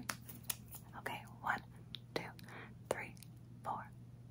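A woman whispering softly close to the microphone, counting numbers under her breath, with a few small sharp clicks between the words.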